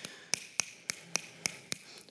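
A hand snapping its fingers rapidly, about eight sharp snaps at an even pace of roughly four a second.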